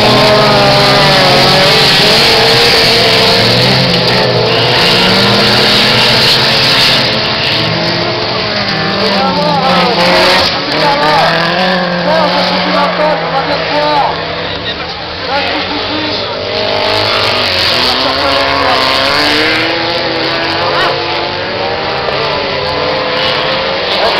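Autocross cars racing on a dirt circuit, several engines revving hard, rising and falling in pitch as the drivers accelerate and lift through the corners. The engine noise eases a little about two-thirds of the way through, then builds again.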